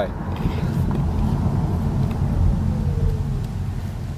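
Steady low rumble of a car heard from inside its cabin, with a faint whine gliding slowly down in pitch around the middle.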